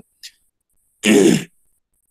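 A person clearing their throat once, about a second in, for about half a second, with a faint click just before.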